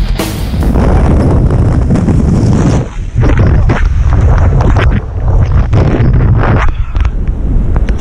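Strong wind buffeting and rushing over the camera microphone as a tandem parachute deploys, loud and rumbling throughout; backing music cuts out in the first second.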